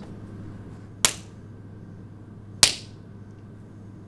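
Two sharp slaps to the face, about a second and a half apart, over a faint steady room hum.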